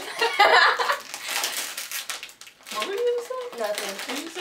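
Women laughing and talking while a plastic snack wrapper crinkles as it is pulled open, the crinkling clearest in the middle.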